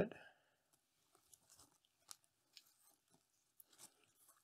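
Faint, scattered crackles and rustles of hands handling a sprouting canna rhizome packed in peat moss in a thin plastic bag, under near silence.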